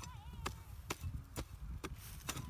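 Hoe blade chopping into packed earth, four strikes about half a second apart.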